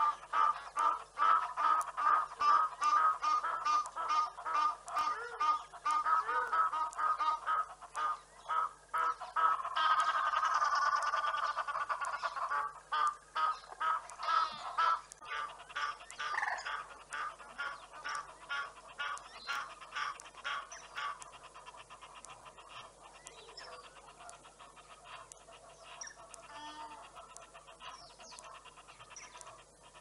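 Birds calling in a fast run of harsh repeated notes, about two to three a second, loudest in the first half and fading to fainter, sparser calls after about fifteen seconds.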